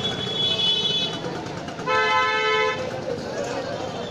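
Vehicle horn honking twice, a fainter toot about half a second in and a louder one about two seconds in, each under a second long, over steady street hubbub.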